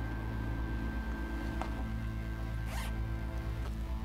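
A bag's zipper pulled open in a short rasp almost three seconds in, with a fainter scrape before it, over steady background music.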